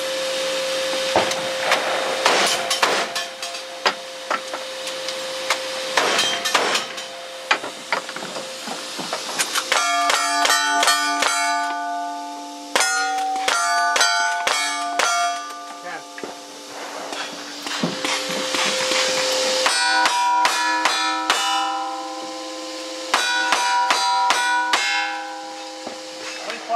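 A fast string of gunshots from lever-action rifle and single-action revolvers, several shots a second in runs, each hit on the steel plate targets ringing on after the shot. All the targets are hit, so the ringing follows nearly every shot, with stretches where several plates ring on top of one another.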